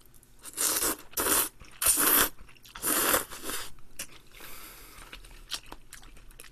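Slurping spaghetti noodles in a thick cream carbonara sauce: four loud slurps in the first four seconds, then quieter chewing.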